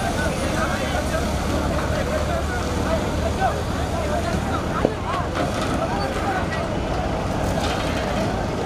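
Crowd chatter, many voices at once, over the steady low running of a mobile crane's engine as it lifts and swings a heavy load.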